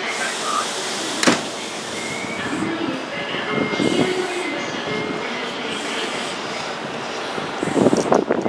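Steady trackside background noise with a train in the distance, a person briefly speaking and laughing, and one sharp click about a second in. Near the end, wind begins buffeting the microphone in uneven gusts.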